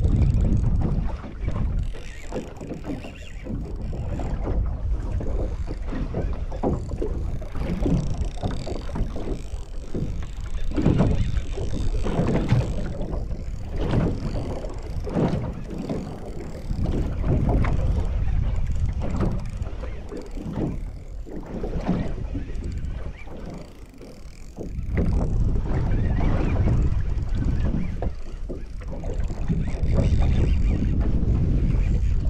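Wind buffeting the microphone and small waves slapping against the hull of a small boat, with irregular knocks and rustles of handling throughout.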